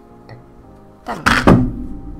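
A padded mailing envelope and a packaged USB flash drive set down on a cloth desk mat, a dull thunk a little past halfway, over steady background music.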